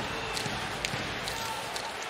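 Ice hockey arena sound: a steady crowd murmur with several sharp clacks of sticks, skates and puck on the ice and boards as players fight for the puck at a faceoff in the corner.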